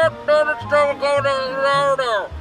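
A high voice singing a short jingle-style melody in held syllables, over a bass line that steps between notes.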